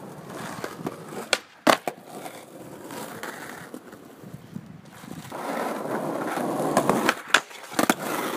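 Skateboard wheels rolling on asphalt, with sharp clacks of the board: two about a second and a half in and two more near the end. The rolling grows louder for a couple of seconds before the last clacks.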